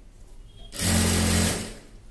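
Industrial sewing machine running in one short burst of under a second, stitching through layered fabric, with a steady motor hum under the rattle of the needle.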